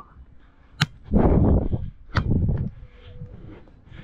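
Beach volleyball rally: two sharp slaps of a hand striking the volleyball, about a second and two seconds in, each followed by wind rumbling against the camera's wind-shielded microphone.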